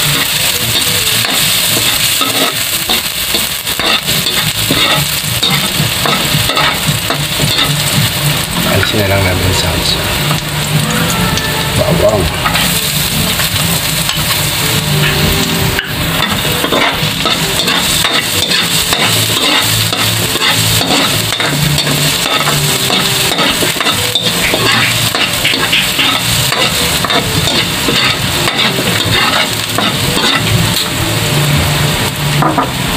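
Chopped onion and garlic sizzling in hot oil in an aluminium wok, with a metal ladle scraping and clinking against the pan as it is stirred.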